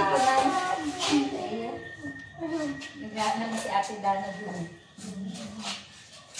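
Indistinct chatter of several people talking at once, voices overlapping.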